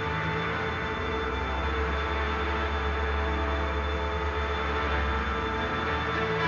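Background music: steady held tones over a low drone, unchanging throughout.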